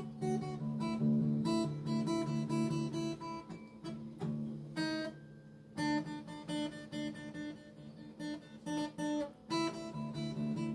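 Solo acoustic guitar played fingerstyle, single plucked notes and chords ringing out. The playing eases off to a quieter ringing passage about halfway through, then picks up again.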